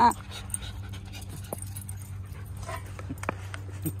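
Dogs panting close by, with scattered small clicks and a faint short whine about two-thirds of the way through.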